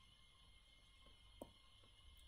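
Near silence: faint room tone, with one small faint click about one and a half seconds in.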